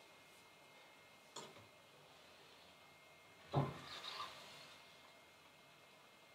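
Quiet kitchen handling at a foil-wrapped sous vide water bath: a light click about a second and a half in, then a louder knock followed by a brief rustle as metal tongs reach in for the bagged ribs.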